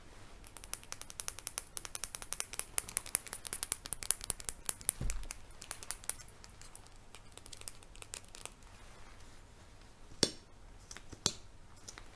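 A mascara tube handled close to the microphone: a fast run of small plastic clicks and ticks for the first several seconds, thinning out, then a few louder single clicks near the end.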